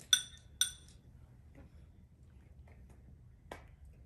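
Two ringing clinks of a metal spoon against a ceramic cereal bowl, about half a second apart, followed by a single sharp tap near the end.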